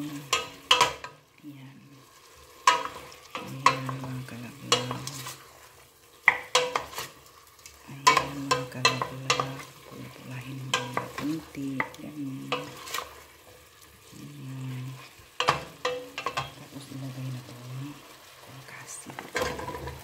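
Wooden spoon stirring pork cubes frying in oil in a stainless steel pot, scraping and knocking against the pot every second or so over a light sizzle. Near the end, chunks of raw taro are tipped into the pot.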